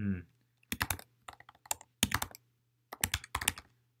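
Typing on a computer keyboard: quick runs of keystrokes in four short groups with brief pauses between.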